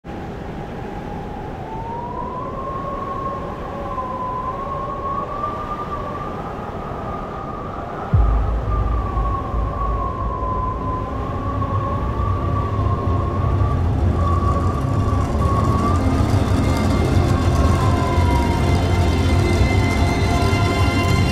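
Film-trailer soundtrack music: one long, slowly wavering high tone over a low drone, with a deep bass that comes in suddenly about eight seconds in and grows louder.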